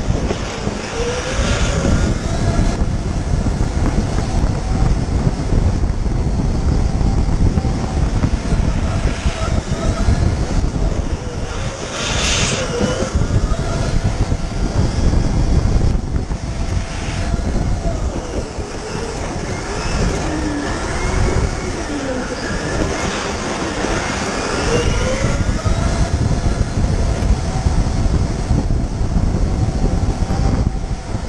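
Go-kart running at speed on a track, heard from a camera mounted on the kart, with a heavy rumble and wind buffeting on the microphone; the motor's pitch rises and falls repeatedly through the lap.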